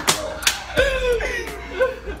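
Two sharp smacks about half a second apart near the start, then a man's voice.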